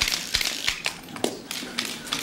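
A run of sharp, irregular still-camera shutter clicks, several in quick succession, with two soft low thumps about a third and two-thirds of a second in.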